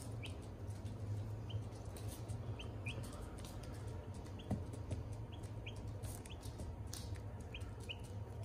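Onagadori chicks peeping in short, rising chirps, one or two a second, with scattered sharp taps of beaks pecking seed off newspaper. A steady low hum runs underneath.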